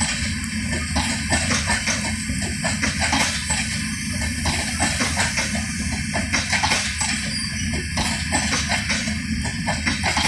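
LHB passenger coaches rolling slowly past, their wheels clacking over the rail joints in a steady, repeating rhythm over a constant rumble.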